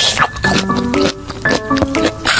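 Background music with biting and chewing sounds from a spicy gluten strip (latiao) being eaten, heard as short sharp noises scattered through the music.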